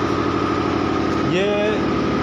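A machine motor running steadily with a fine, even pulse, with a man's short spoken word about one and a half seconds in.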